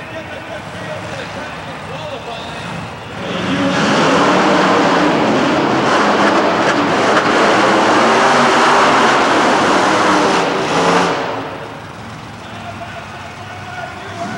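Monster truck engines at full throttle for about eight seconds as two trucks race side by side over rows of crushed cars. Lower engine rumble comes before and after the run.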